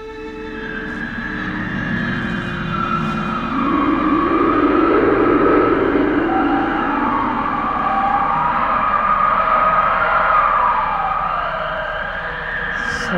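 Stage sound effect of a howling blizzard wind: a rushing wind that swells over the first few seconds, with whistling tones sliding up and down.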